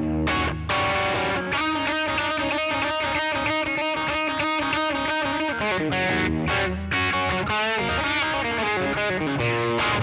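Electric guitar tuned down a half step, lightly overdriven, playing a fast up-tempo blues lead line: rapid picked notes and double stops with quick slides and bends.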